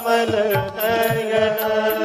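Hindu devotional bhajan music: a long held sung note that bends at the start and then holds steady over a drone, with regular drum strokes beneath.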